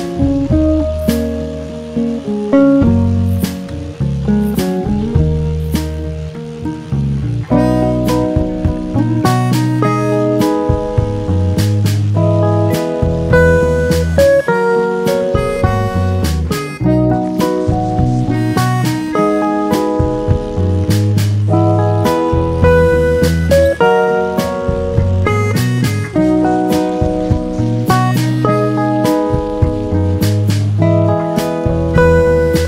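Background music: plucked notes playing a melody over a recurring low bass line.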